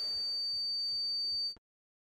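A steady, high-pitched sine-like ringing tone, the film's sound-design ear-ringing effect for shock, over faint room tone. It cuts off suddenly about a second and a half in.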